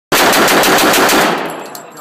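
M3 "Grease Gun" submachine gun firing one long fully automatic burst of rapid, evenly spaced shots. The burst stops a little past halfway, and the reverberation of the indoor range dies away after it.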